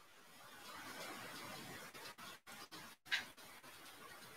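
Faint hiss of an internet video-call audio line, dropping out abruptly a few times, with one short click about three seconds in; the call connection is poor.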